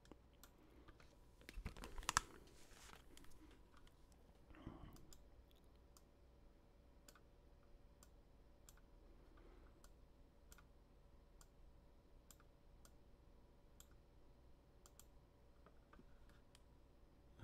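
Near silence: soft handling noise as over-ear headphones are picked up and put on, in the first few seconds. After that come faint, regular ticks, about two a second, over a faint steady hum.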